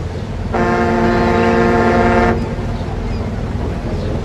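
A ship's horn sounds one steady blast of about two seconds, starting about half a second in, over a low rumble.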